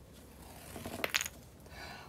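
Tennis ball rolling off a cardboard ramp and striking a row of six small wooden blocks: a faint rolling sound, then a brief clatter of wood on wood just after a second in as the blocks are knocked apart.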